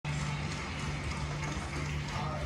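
Steady room background: a low, even hum under a faint hiss, with no ball strikes.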